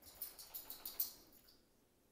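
Faint handling noise from a phone camera being moved: a quick run of thin, high-pitched clicks and rustling that dies away about a second and a half in.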